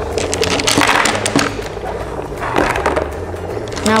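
Dry ice bubbling rapidly in warm water in a cauldron as it turns to fog, with a dense run of pops about a second in.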